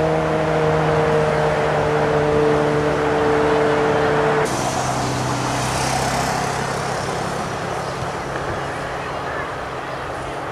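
An engine running steadily, a low hum with several tones that sag slightly in pitch. About four and a half seconds in the hum abruptly thins to a lower drone and a hiss comes up, and the sound grows fainter toward the end.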